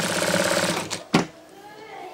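Industrial straight-stitch sewing machine running in a short burst of about a second, sewing a pocket onto sweatshirt fabric, then stopping; a single sharp click follows.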